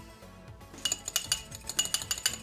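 A metal fork beating egg wash in a small ceramic ramekin, clinking rapidly against the bowl, about six or seven strokes a second, starting a little under a second in.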